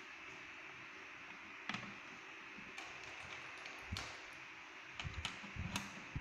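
Banana-plug patch cords being pushed into and handled around the sockets of an electronics trainer panel: scattered light clicks and taps, with a cluster of them in the last second, over a faint steady hiss.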